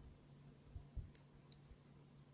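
Near silence with a few faint clicks of circular knitting needles being worked, the clicks coming a little after a second in.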